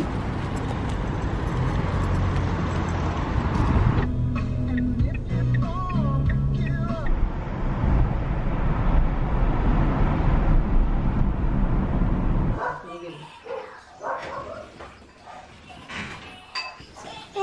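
Loud outdoor rumble of wind on the microphone and road traffic, with a few short gliding voice-like calls in the middle. Near the end it drops suddenly to a much quieter indoor room sound.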